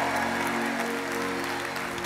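Congregation applauding and cheering, dying away, over a steady held chord of background instrumental music.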